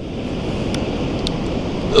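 Steady rush of wind and ocean surf on a beach, with wind buffeting the microphone.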